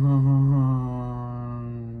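A man's voice holding one long, low chanted tone, wavering slightly at first and then steady in pitch, slowly fading.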